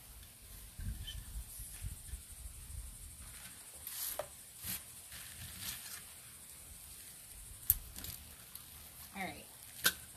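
Soft handling noises as a snake plant's root ball is pulled apart and its pot is moved. A low rumble in the first few seconds is followed by scattered light clicks, the sharpest about three-quarters of the way in.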